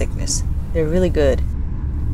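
Steady low rumble of road and engine noise inside a moving car's cabin, with a person's voice speaking briefly about a second in.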